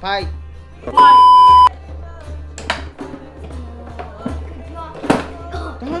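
Background music with voices over it. About a second in, a loud steady electronic beep lasts under a second, and two sharp knocks come later.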